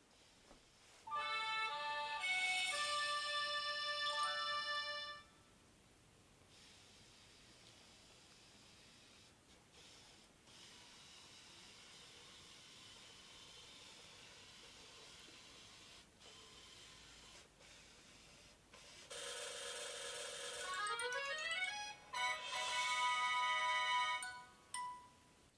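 Kumiita toy robot playing an electronic tune of changing notes for about four seconds as it sets off, then a faint steady sound while it moves along the paper tiles. Near the end comes a second electronic jingle with quick rising runs of notes as it reaches the goal tile.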